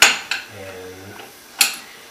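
Metallic clinks and clanks as a weight is fitted onto the end of a counterbalance arm: a sharp clank at the start, a smaller one just after, and another sharp click about a second and a half in.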